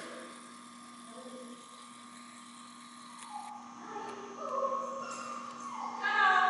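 A steady low hum, with faint, distant talking from about four seconds in.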